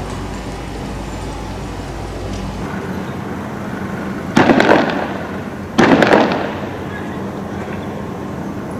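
Two loud bangs about a second and a half apart, each dying away briefly after it. They are the sound of a street clash.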